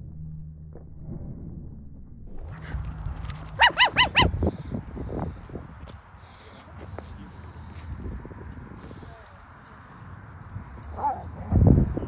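Dog barking: four quick, high-pitched barks about four seconds in, then another bark near the end.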